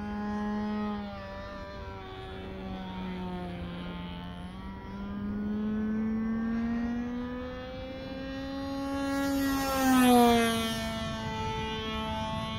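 Nitro engine of a radio-controlled model airplane in flight, a steady buzz that drifts slowly in pitch. It gets louder and higher as the plane comes closer, peaks about ten seconds in, then drops in pitch as it passes.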